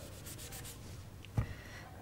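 Chalk scratching and rubbing on a blackboard as a formula is written, with one short knock about one and a half seconds in.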